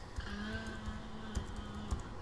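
Keystrokes on a computer keyboard as a password is typed: a handful of light clicks at irregular spacing, the sharpest near the end. A faint steady low hum sits under them.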